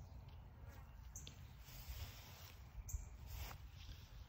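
Faint rustling of clover leaves in a few short bursts over a low steady rumble, as the clover is disturbed.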